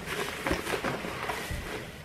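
Clear plastic bag crinkling and rustling in the hands, with scattered light clicks and taps as its contents are handled.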